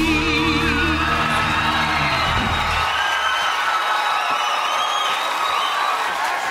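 The end of a sung pop ballad with band backing: a wavering held note over the band, which stops about three seconds in, giving way to a studio audience cheering, whooping and applauding.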